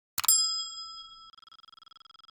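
A click followed by a bright bell 'ding' notification sound effect. The ding rings out and fades over about two seconds, wavering as it dies away.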